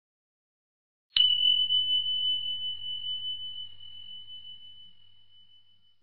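A single bell ding: one clear high tone struck once about a second in, fading slowly over several seconds. It signals that the answer time on the countdown has run out.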